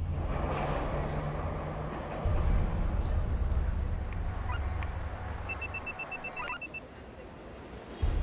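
Trailer sound design: a steady, deep rumble with a traffic-like noise over it, a whoosh about half a second in, and a quick string of faint electronic beeps a little past the middle. The whole bed fades down toward the end.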